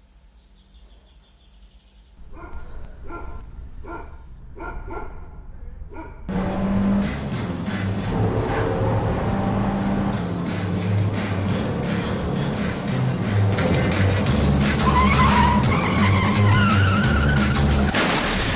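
Car engine running hard and tyres squealing over music, the sound of a car skidding, starting suddenly about six seconds in and loudest near the end. Before it come a few seconds of soft, evenly spaced beats.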